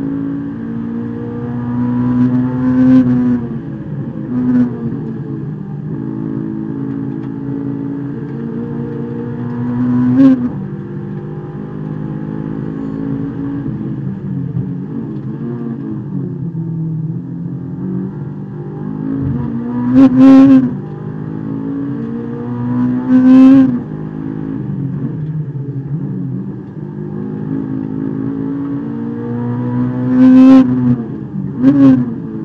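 Honda S2000 race car's four-cylinder engine, heard from inside the cabin, pulling hard on a track lap. Its pitch rises and falls as it is worked through the gears, with several short, loud peaks at high revs.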